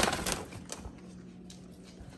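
A few light clicks and taps of handling in the first second, then quiet room noise with a faint steady hum.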